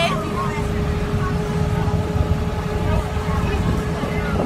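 School bus driving, heard from inside the cabin: a steady low engine and road rumble with a thin steady whine above it.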